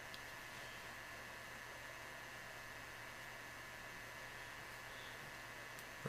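Faint steady hiss with a low mains hum: room tone and the recording's noise floor, with no distinct sound events.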